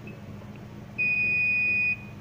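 A digital multimeter's continuity buzzer gives one steady, high-pitched beep of about a second, starting about halfway in, as the probe touches a capacitor pad on a phone's circuit board. The beep marks that side of the capacitor as connected to the negative (ground) line.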